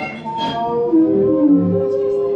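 Improvised experimental music from trombone, a bowed string instrument and electronics: several long held tones overlap and slide slowly in pitch, with a short noisy burst about half a second in.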